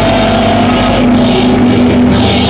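Live punk rock band playing loud through a PA, with distorted electric guitar holding sustained notes.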